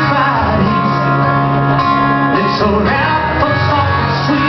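Live solo acoustic performance: an acoustic guitar strummed steadily while a man sings into a microphone, with one long held note in the middle.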